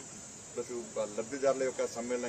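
A man speaking, resuming after a short pause about half a second in, over a steady high hiss.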